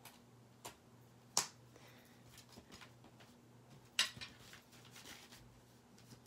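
Small clips being clipped onto the edges of a stack of paper journal pages, with the pages handled: a few sharp clicks, the loudest about a second and a half in and again about four seconds in, with fainter taps between.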